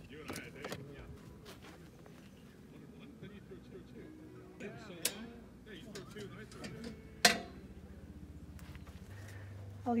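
Faint voices, with a small click and then a single sharp clack as an RV shore-power plug is worked into a campground power pedestal. A low steady hum begins near the end.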